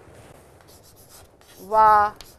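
Chalk writing on a chalkboard: faint, scratchy strokes as letters are chalked, and near the end a voice says one syllable.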